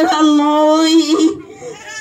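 A man singing a Filipino ballad into a handheld microphone, holding one long steady note for about a second and a half before breaking off, then starting the next line at the very end.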